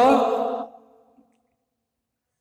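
A man's voice drawing out the end of a spoken word, fading out within the first second, then near silence.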